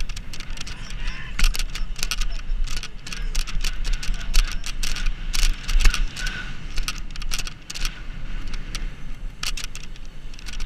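Wind buffeting the microphone of a helmet-mounted camera on a moving BMX rider, over a steady rumble of tyres rolling on asphalt, with frequent sharp clicks and rattles from the bike and the camera mount.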